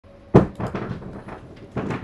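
A sharp knock about a third of a second in, followed by a run of smaller clicks and knocks, like something being handled on a hard surface.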